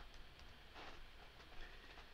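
Near silence: faint room tone with a few soft clicks of a computer mouse.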